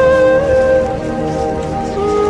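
Background music: a flute-like wind instrument playing a slow melody, holding one note before it falls away about halfway through.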